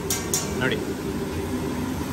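Steady drone of a kitchen exhaust hood over a large round flat-top griddle, with two short scrapes of metal spatulas on the griddle near the start.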